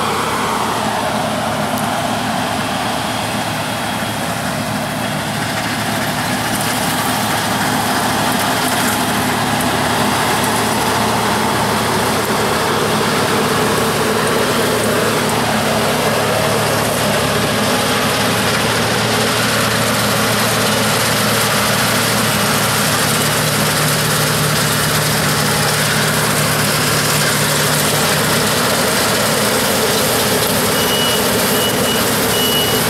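Claas Tucano 320 combine harvester working through standing wheat: a steady diesel engine drone under the dense rushing of the cutting and threshing machinery. The pitch slides down a little in the first few seconds as it passes close by.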